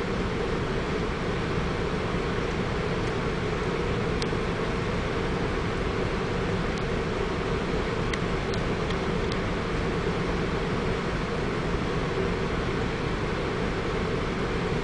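Steady low machinery drone inside a ship's wheelhouse, the vessel's engine and ventilation running at a constant pitch, with a few faint clicks.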